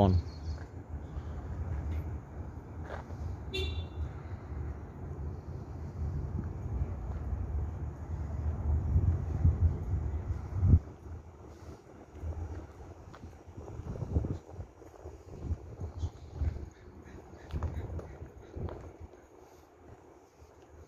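A single short car-horn beep about three and a half seconds in, over a low street rumble that drops away with a bump about halfway through.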